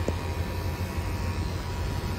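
Steady low machine hum with an even hiss, like room ventilation or equipment noise, with a faint click just after the start.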